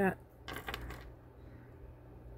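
Metal wire jewelry clinking: wire rings and a fine chain jingling against each other as one ring is lifted from the pile, a short run of light clicks about half a second in.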